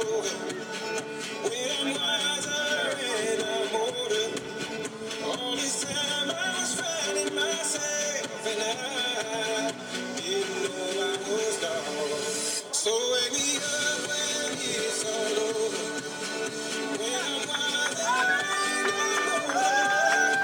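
A song with singing plays steadily as background music.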